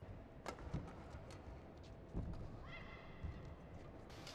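Badminton rally heard faintly: sharp taps of rackets on the shuttlecock and footwork on the court, with a brief rising squeak of a shoe on the court surface about two-thirds of the way through.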